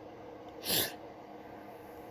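A man's single short breathy vocal sound, falling in pitch and lasting a fraction of a second, about a third of the way in; otherwise faint room hiss.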